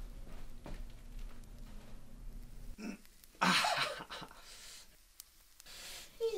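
A man's loud, breathy outcry of strain, in reaction to something hot, about halfway through, fading into quieter strained breathing.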